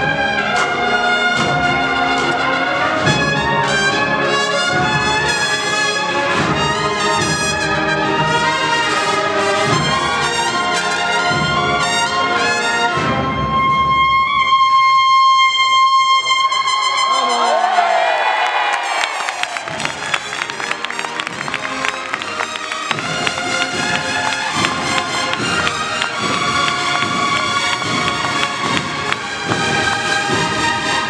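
Massed cornetas y tambores band, Spanish valveless bugles with drums, playing a processional march. A long held bugle chord comes about halfway through, followed by a passage of bending pitch and a quieter stretch. The full band with drums then comes back in for the last third.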